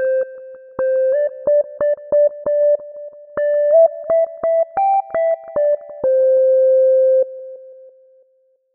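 Instrumental melody on an electronic keyboard: single short notes climbing slowly in pitch, then one long held note that fades away near the end.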